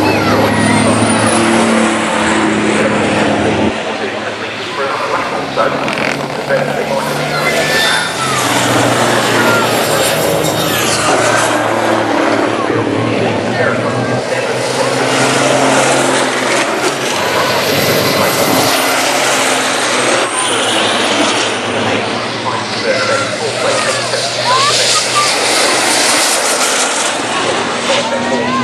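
Race trucks' diesel engines running on the circuit as the trucks drive past one after another, the engine tones coming and going.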